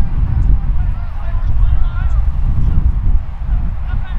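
Wind rumbling on the microphone, with a few faint short calls over it.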